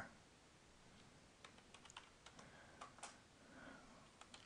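Faint, scattered clicks of a computer keyboard and mouse over near-silent room tone, starting about a second and a half in.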